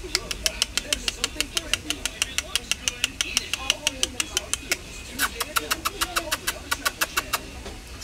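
A guinea pig crunching dry food from its bowl: quick, even crisp clicks of chewing, about five a second, with a brief pause a little past the middle.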